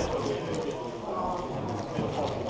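A plastic 6x6 speedcube being turned fast: a quick, irregular run of clicking layer turns, over a steady murmur of background chatter.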